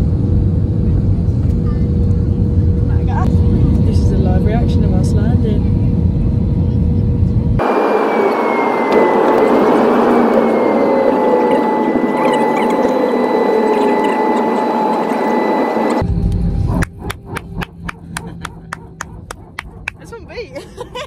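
Loud, deep rumble of a jet airliner's engines heard from a window seat over the wing, with a steady hum in it. About eight seconds in it cuts to quieter cabin noise: a hiss with steady whining tones. Near the end there is a quick run of sharp clicks.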